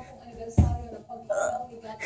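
A heavy thud about half a second in as a gymnast lands on a low padded floor beam, followed about a second later by a short hiccup-like vocal sound.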